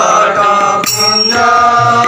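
Odia village devotional singing: a man holding a long chanted note over a harmonium, with a pair of small brass hand cymbals (gini) struck twice, about a second apart, and left ringing.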